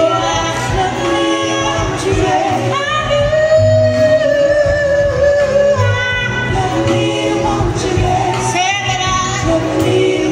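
A female soul singer sings live with a band behind her. About three seconds in she holds one long note with a wavering pitch for around three seconds, then goes back to shorter sung phrases.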